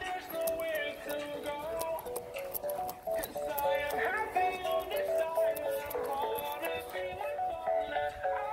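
Music from a JBL PartyBox 300 party speaker heard from a distance: a melody line comes through clearly throughout, but with almost no bass.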